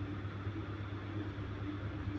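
A steady low background hum, even and unchanging, with no other event.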